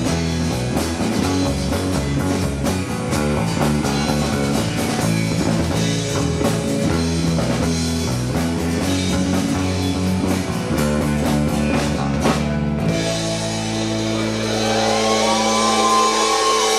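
Live rock band playing, with electric bass, acoustic guitar and drum kit. About thirteen seconds in the drums stop and a low chord is left ringing.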